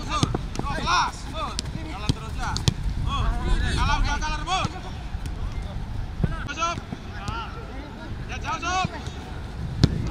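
Footballers shouting short calls to each other across the pitch during a passing drill. The ball is kicked with sharp thuds several times, over a steady low rumble of wind on the microphone.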